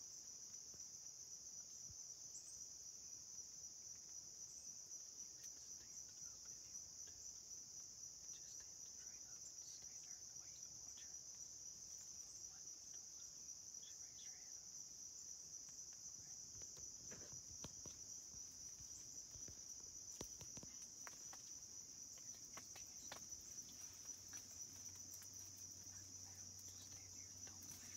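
Faint, steady high-pitched chorus of insects chirring in the woods. A few soft clicks and rustles come in over the last third.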